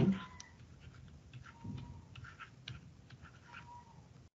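Faint scattered clicks and scratches of a stylus or pen writing on a tablet. Three faint brief high tones come in and out: one at the start, one about midway, one near the end.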